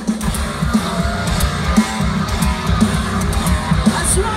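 Live rock band playing loud, heavy music without vocals: electric guitars, bass and drums with crashing cymbals, heard from within the audience.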